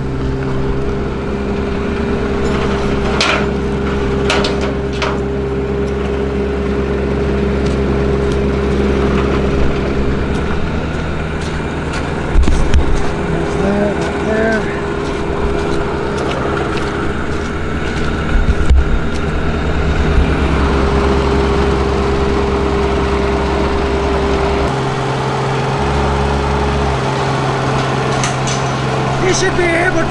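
Bobcat E20 mini excavator's diesel engine running steadily, its note shifting about five-sixths of the way through. A couple of sharp metal clanks stand out above it.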